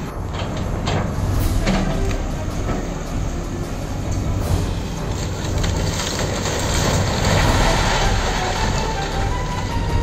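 Wheeled hydraulic excavator demolishing an old house: a steady heavy-machinery rumble from its diesel engine, with the crunch and clatter of masonry, roof tiles and timber breaking and falling.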